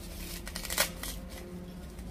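Dry baobab fruit pulp and fibres being scraped out of the split husk with a small metal tool, a dry rustling scrape in irregular strokes, loudest a little under a second in.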